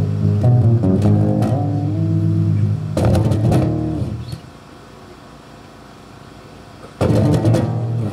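Electric bass guitar played live through an amplifier: held low notes, then a single struck chord about three seconds in that rings out and fades, a pause, and another struck chord near the end.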